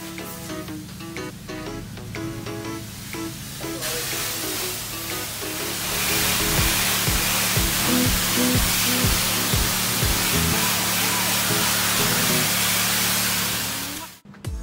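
Background music with a steady beat, joined from about five seconds in by the loud, even hiss of a car-wash pressure wand spraying water against a travel trailer.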